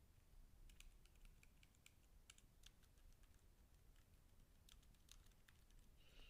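Near silence: quiet room tone with faint, irregular little clicks scattered throughout.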